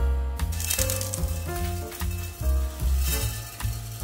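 Small 3–5 mm aquarium gravel poured into a glass jar: a hissing rattle of grains in two stretches, about a second in and again around three seconds in. Background music with a steady beat plays throughout.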